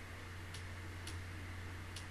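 Quiet room tone: a steady low hum with two faint clicks, about half a second and a second in.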